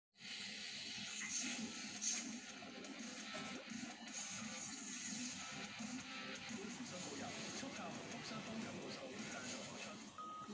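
Television advertisement soundtrack, background music with a voice-over, played through a TV set's speaker.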